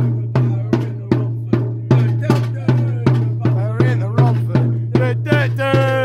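A bass drum beaten in a steady, even rhythm, about two and a half strikes a second, backing a football chant. A crowd of supporters' voices starts singing over it in the second half, loudest near the end.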